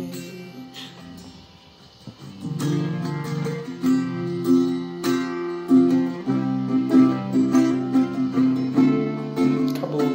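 Acoustic guitar chords. The first two seconds are a soft ring that fades, then strumming starts again about two seconds in and goes on steadily.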